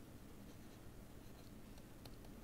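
Near silence with faint scratching and a few light ticks of a stylus writing on a pen tablet.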